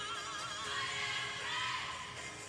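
Gospel church music: a high voice singing sustained notes with a wide, fast vibrato over held accompaniment chords.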